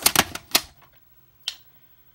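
White plastic VHS clamshell case being closed over the tape: a quick run of sharp plastic clicks and snaps, then one more click about a second and a half in.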